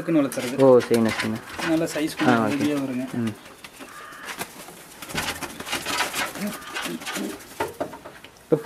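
Domestic pigeons cooing, with a man talking over the first three seconds.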